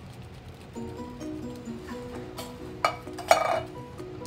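Background music with a simple stepping melody, over which a can of pork and beans is emptied into a plastic-lined slow cooker: three sharp knocks in the second half, the last two the loudest sounds.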